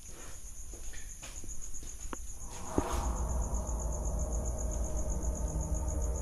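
Insects chirring steadily in a fast, even pulse. About halfway through, a low droning ambient music bed with held tones fades in.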